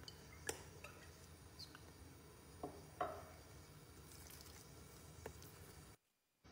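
Olive oil poured from a bottle into a nonstick frying pan: mostly quiet, with a few faint drips and light taps, the loudest about three seconds in.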